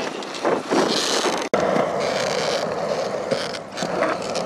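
Skateboard wheels rolling over concrete, a steady rolling noise, cut off for an instant about a second and a half in before it carries on.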